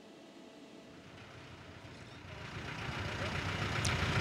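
A vehicle engine idling with outdoor street noise, starting faint and growing steadily louder over the last two seconds.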